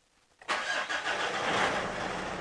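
Mitsubishi Triton's 4D56 four-cylinder diesel starting up about half a second in and running on at idle. The owner says the engine has become a little harder to start and idles a little rougher since its intake was decarbonised, which the injector small-quantity relearn is meant to help.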